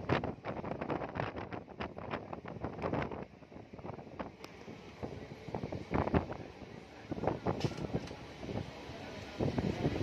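Passenger train running, heard from inside the coach at an open window: wind buffeting the microphone over irregular rattling and clattering.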